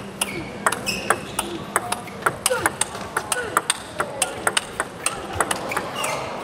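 Table tennis rally: the plastic ball clicking sharply off the rackets and the table in quick succession.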